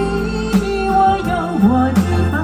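Live concert music through the stage sound system: a slow song with long held melody notes over a steady band accompaniment.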